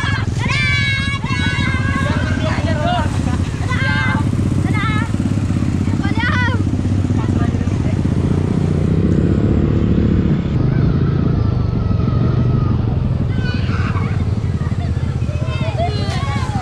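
Motorcycle engine running with a steady low rumble that rises a little about halfway through. Voices call out over it in the first few seconds and again near the end.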